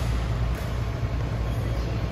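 Steady low hum and hiss of a large indoor sports hall's ventilation, with one sharp click about half a second in.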